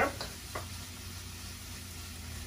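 Shrimp and egg sizzling steadily in a hot wok while being stirred with a wooden spoon.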